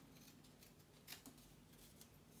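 Faint snips of scissors cutting kinesiology tape, several short cuts in a row with the clearest about a second in, rounding off the corners of a tape strip.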